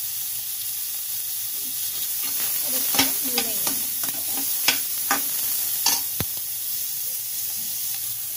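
Chopped onion and garlic sizzling steadily in oil in a metal kadhai over a low gas flame. A wooden spatula stirs them, scraping and knocking against the pan a few times in the middle of the stretch.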